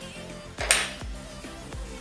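Background music with a steady beat. A brief, sharp noise stands out about half a second in.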